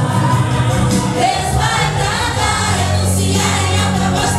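A small group of women singing a gospel hymn together, one lead voice amplified through a handheld microphone, over instrumental accompaniment with sustained bass notes.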